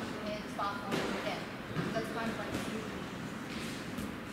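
Speech only: a woman's voice talking over steady background noise.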